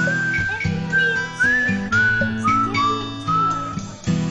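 Music: a whistled melody of held notes with short slides between them, over plucked guitar chords.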